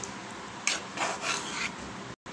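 Silicone spatula stirring and scraping through mung dal and a fish head in a metal pot, about four short scraping strokes in the second half.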